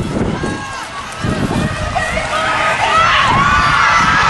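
Several voices shouting and calling out at once during open rugby play, building louder about three seconds in, over a gusty low rumble of wind on the microphone.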